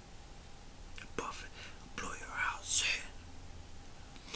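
A man whispering a few words under his breath, breathy and hissy, after a single sharp click about a second in.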